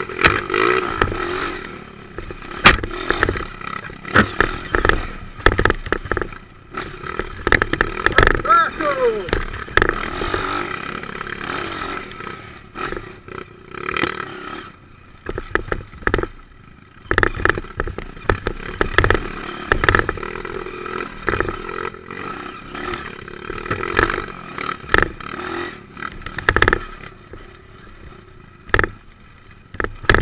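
Off-road motorcycle engine running at low revs and rising and falling with the throttle while the bike climbs a rocky trail, with frequent sharp knocks and clatter from rocks and the bike's suspension.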